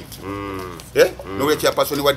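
A short, steady, low drawn-out call or hum lasting under a second, followed by a man talking.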